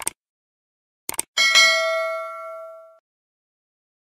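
Subscribe-button animation sound effect. A click at the start and a quick double click about a second in are followed by a notification-bell ding that rings out and fades away over about a second and a half.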